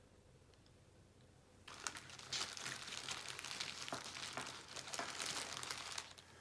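Crinkling and rustling, like plastic packaging being handled, with many small clicks, starting about two seconds in and going on steadily to the end.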